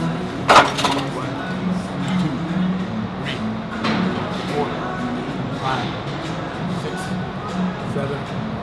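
Gym background music with a sharp metallic clank of gym equipment about half a second in, followed by a few fainter clinks.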